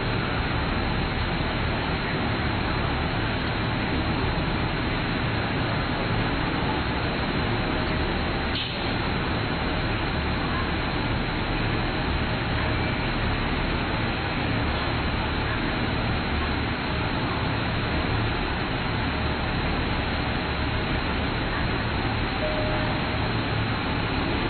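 Steady railway-station platform ambience: an even rumble and hiss with no distinct train movement, and a single brief click about eight and a half seconds in.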